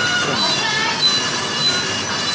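High-pitched metallic squealing from the motorised mechanism of animated museum mannequins: several thin, steady squeal tones with a few short wavering glides.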